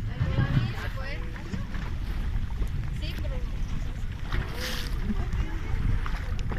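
Steady low rumble of wind and water on the microphone aboard a small boat at sea, with people's voices calling out briefly a few times.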